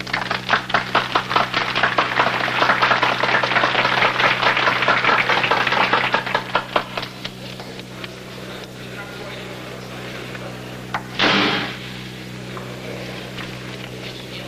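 Rapid, irregular clicking and tapping, dense for several seconds and thinning out about seven seconds in, over a steady low hum; about eleven seconds in comes one loud, short burst of noise, like a whoosh.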